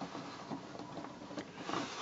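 Hands handling a plastic Lego Hero Factory model, with faint clicks and rubbing of the plastic parts as a piece is set in place.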